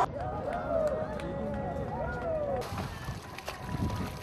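Voices of people playing in a swimming pool, calling out over the low slosh of water, with a splash near the end as a swimmer goes under headfirst.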